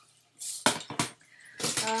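Storage boxes of metal jewelry findings handled and set down, giving a couple of short clinks a little under a second in.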